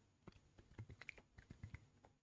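Faint gulps and small clicks of a man drinking water from a plastic bottle, a string of soft swallows with little clicks between them.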